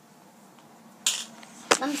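A short hiss about a second in, then a single sharp click.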